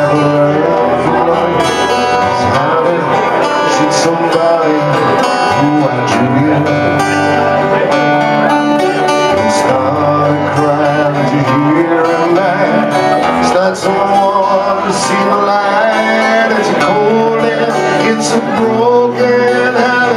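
A small acoustic band playing live: two acoustic guitars played together, with a man singing lead over them.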